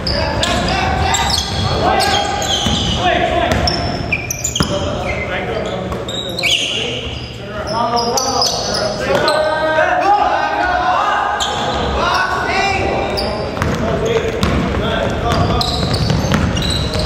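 Indoor basketball game on a hardwood gym floor: the ball bouncing on the boards, short high sneaker squeaks, and players' voices calling out, all echoing in the large hall.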